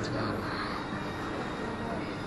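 Steady background noise of a busy toy store: a constant hum of indistinct voices and room noise, with no single sound standing out.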